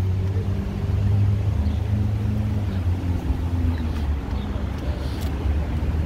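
Street traffic: a motor vehicle engine running nearby, a steady low hum.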